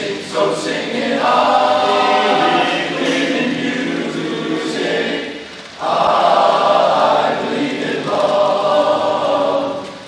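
Men's barbershop chorus singing a cappella in close harmony, holding long sustained chords, with a short break between phrases about five and a half seconds in.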